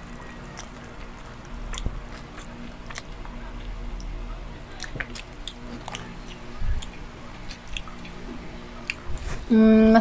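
Close-up chewing and eating mouth noises, with many small scattered clicks, picked up by a clip-on microphone. A voice starts again just before the end.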